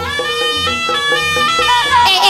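Live Javanese band music, instrumental: a lead instrument plays a melody in held notes that step up and down over a steady low drum beat.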